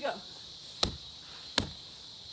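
A freestanding punching bag being struck in a steady rhythm: two sharp thuds about three quarters of a second apart.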